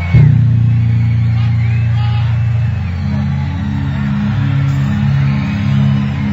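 Live band music played loud through a concert sound system: a loud hit just after the start opens a deep, sustained bass line that shifts pitch about three seconds in, with a crowd cheering over it.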